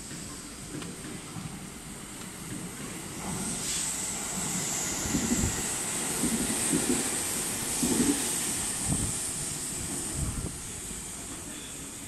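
JR Central 313 series electric train passing through the station without stopping. A high hiss swells from about four seconds in, with a string of wheel clacks over the rail joints, and fades near the end.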